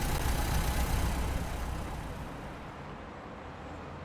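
Road traffic: a low vehicle rumble over a steady hiss, loudest in the first second and a half, then easing to a quieter, steady city-traffic background.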